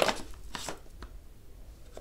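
Two or three light knocks and taps from handling a boxed phone in the first second.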